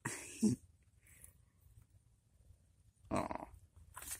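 A cat vocalizing twice: a short call right at the start and another about three seconds in.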